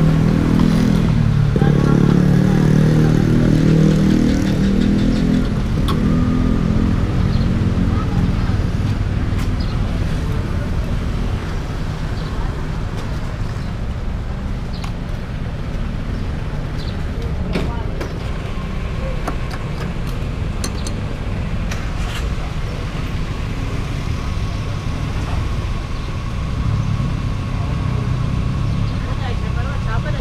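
Motorcycle engines idling, with voices in the background. A thin steady high tone comes in about two-thirds of the way through.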